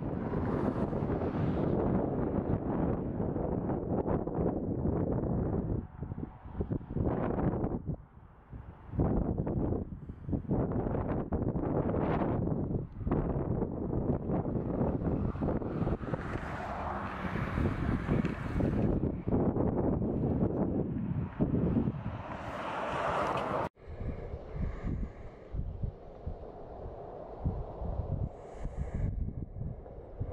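Wind buffeting the microphone in uneven gusts. It breaks off suddenly near the end and goes on more quietly.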